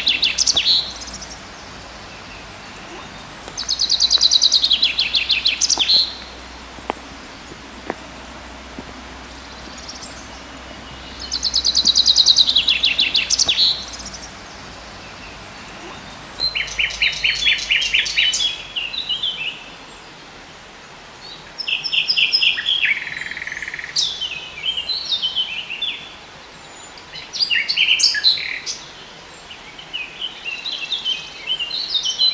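Wild songbirds singing: repeated high song phrases of rapid notes, each lasting about two seconds, with gaps of a few seconds between them. In the second half the phrases come more often and change to a lower, more clipped pattern.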